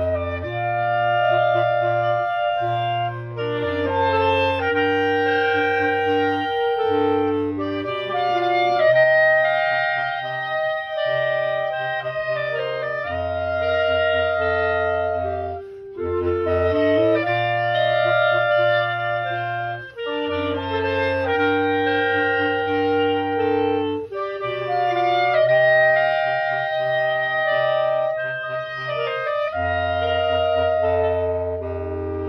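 A small wind ensemble playing: clarinets carry the melody over a low brass bass line of long held notes, with short breaks in the phrasing about halfway through and again a few seconds later.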